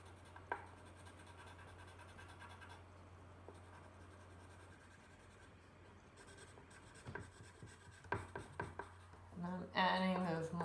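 Coloured pencil scratching across paper in shading strokes, over a faint steady hum; the strokes get sharper and more frequent about seven seconds in.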